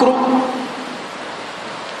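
A man's voice through a microphone trails off on a held vowel, fading over about half a second, then a steady, even hiss fills the pause.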